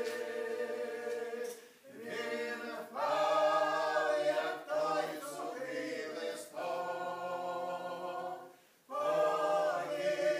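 A small mixed group of men and women singing a Ukrainian riflemen's folk song a cappella, in long drawn-out phrases. The voices break off briefly for breath about two seconds in and again near the end.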